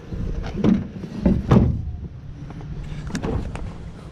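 Upholstered armchair knocking and scraping against a pickup truck's metal tailgate and bed as it is pushed in: a handful of thumps in the first second and a half, the loudest at about a second and a half, then a couple of lighter knocks.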